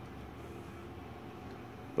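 Steady, quiet indoor room noise: a low even hum with no distinct events.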